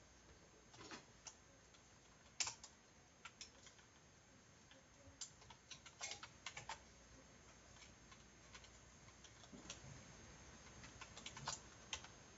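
Faint, scattered keystrokes and clicks from a computer keyboard and mouse: a few single taps, a quick run of clicks about six seconds in, and more near the end.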